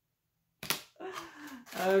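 Dead silence at an edit cut, then a sharp click and some handling noise from a plastic vacuum-sealer bag held in the hands. A woman's voice starts near the end.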